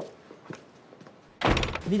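Faint footsteps about half a second apart, then a door shutting with a loud thunk about one and a half seconds in.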